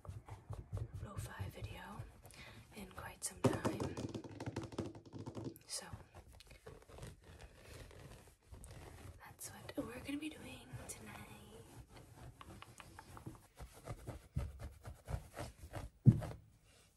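Unintelligible whispering and soft mouth sounds, mixed with scattered light knocks, thuds and rustling of cloth and handling as she shifts around on a shaggy rug.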